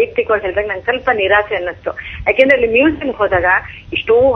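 Speech heard over a telephone line: a caller talking, sounding thin.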